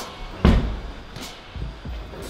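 A climber landing feet-first on a padded bouldering crash mat after dropping from the wall: one heavy thud about half a second in, followed by a couple of faint knocks.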